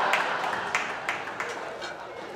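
Audience laughter with scattered clapping, dying down.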